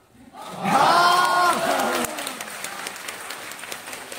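A loud shout from about half a second to two seconds in, followed by audience applause, a patter of many claps.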